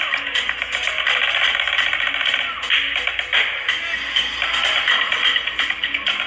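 Snare drum played with sticks in a fast, dense street-drumming pattern of rapid strokes and rolls.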